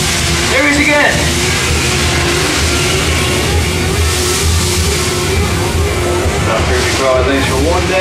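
Attraction soundtrack music over a steady low rumble and hiss, with brief snatches of voice about a second in and near the end.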